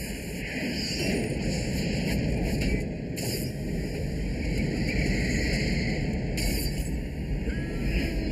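A steady rushing, rumbling noise from a film soundtrack played over loudspeakers, with the hiss shifting abruptly about three seconds in and again about six and a half seconds in.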